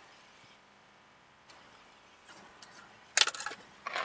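Mostly quiet inside a car, then about three seconds in a short burst of clicks and rustling from a phone being handled and moved, with another click just before the end.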